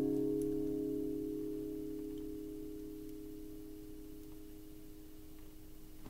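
Acoustic guitar's last strummed chord ringing out, its sustained notes fading away slowly over several seconds.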